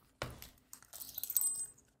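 Handling of a leather traveler's notebook and its black leather zip wallet insert. A single knock comes just after the start as the wallet goes down on the table, followed by light clicks and rustling of leather and paper.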